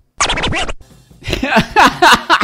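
A record-scratch sound effect of about half a second near the start, then a person's voice about a second later.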